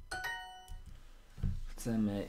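Language-learning app's correct-answer chime: a short bright ding with several ringing overtones, sounding as the answer is accepted and fading out in under a second.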